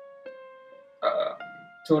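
Background piano music: single notes struck one after another, each ringing and fading. A short vocal sound comes about a second in, and speech starts near the end.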